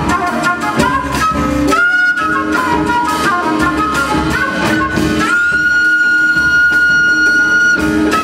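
Concert flute playing an improvised jazz solo over big band accompaniment: a quick melodic run, then an upward slide into one long high note held from about five seconds in until near the end.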